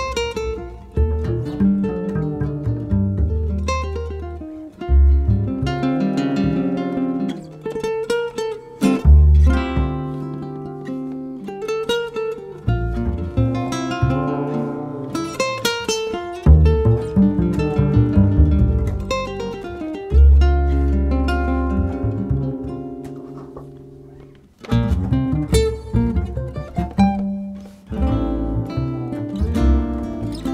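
Acoustic guitar music: plucked and strummed chords that ring and die away, with a few brief pauses between phrases.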